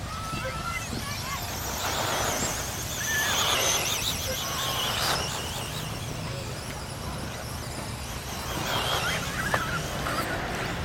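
Electric 1/10-scale 2wd off-road RC buggies racing: a high-pitched motor and gear whine that rises and falls in pitch as they accelerate and brake, loudest between about two and five seconds in and again near the end, over a steady low rumble.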